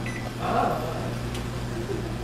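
Steady low electrical hum from an automatic ramen-cooking machine heating a portion of ramen mid-cycle.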